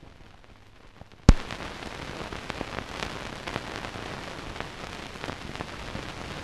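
Surface noise of an old film soundtrack running out past the end of the reel: faint hiss, a sharp pop just over a second in, then louder, steady hiss with scattered crackling clicks.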